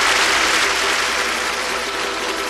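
Audience applauding at the start of a live recording. The applause slowly dies down, with faint held instrument notes underneath.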